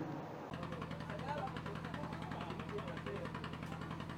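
A steady low mechanical hum with faint voices in the background, starting about half a second in.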